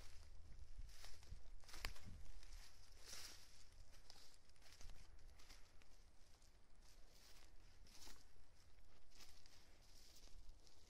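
Footsteps crunching through dry leaf litter and brushing past twigs, uneven steps.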